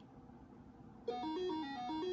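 Near silence for about a second, then simple 8-bit chiptune music starts from the NABU computer's AY-3-8910 sound chip. It is a stepping melody of buzzy electronic notes played by the Hello World demo program.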